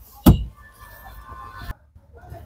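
A single dull thump about a quarter second in, followed by faint steady background sound that cuts off abruptly near the end.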